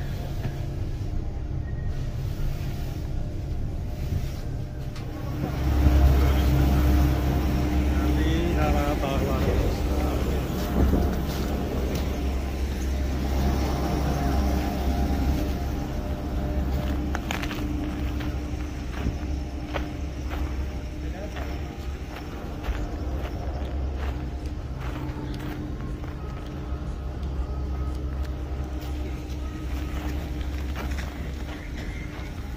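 A steady low rumble with a faint steady hum, louder from about six seconds in, with faint voices in the background.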